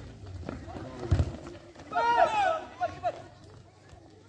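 Players and spectators shouting across an outdoor football ground, with a few loud, high shouts about two seconds in. A low thump comes about a second in.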